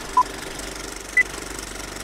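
Two short electronic beeps a second apart, the first a mid-pitched tone and the second an octave higher, in the manner of a film-leader countdown, over a steady rapid mechanical clatter.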